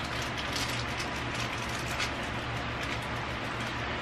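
Light rustling and faint small clicks of small plastic lancets being handled, over a steady low background hum.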